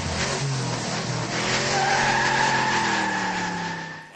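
Racing sedans' engines running, their pitch falling slowly, with a long tyre squeal coming in about one and a half seconds in as the cars corner. The sound fades near the end.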